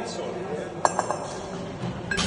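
A pair of 14 kg kettlebells held together in the rack position clinking: three quick metallic clinks about a second in, the first the loudest, each with a short ring.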